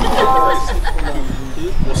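A short horn tone, held steady for about half a second just after the start, over voices of the watching crowd.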